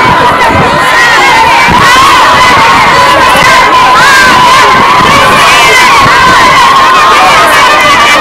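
A large crowd cheering and shouting, loud and continuous, with many voices overlapping and a steady high-pitched note running through them.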